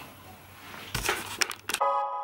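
Handling noise of a knife and twisted sisal rope: quiet at first, then a quick run of scrapes and clicks about a second in. Piano background music starts abruptly near the end.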